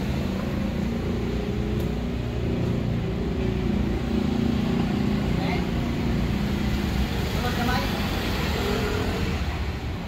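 Steady city street traffic, with vehicle engines running close by as a low, even hum. Faint voices come and go in the background.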